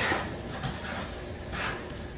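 Felt-tip Sharpie marker writing on paper, its tip making short scratchy strokes. The clearest strokes come about half a second in and again near the end.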